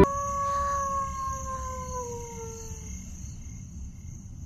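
A single long, pitched, howl-like tone sliding slowly down in pitch and fading out after about three seconds, over a faint steady high hiss.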